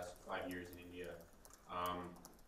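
Light, rapid clicks of typing on a laptop keyboard, heard under a person's halting speech.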